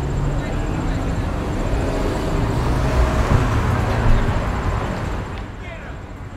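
City street ambience: steady traffic noise with indistinct voices, fading down near the end.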